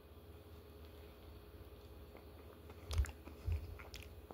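Close-up chewing of a bite of ice cream cone, faint at first, then two louder crunches about three seconds in, half a second apart.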